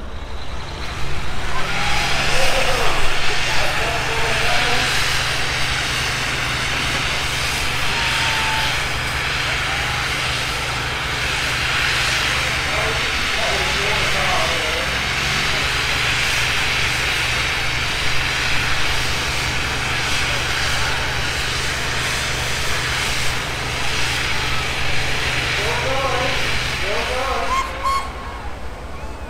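A fire tender's engine runs steadily at a fixed pitch, driving its water pump, with the hiss of its water-cannon jet over it. The drone dips briefly about halfway through and cuts off shortly before the end, and crowd voices come through at times.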